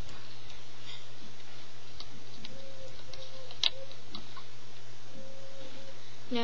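Light, irregular clicks of rubber bands being stretched and snapped onto the plastic pegs of a Rainbow Loom, one sharper click about three and a half seconds in, over a steady low hum.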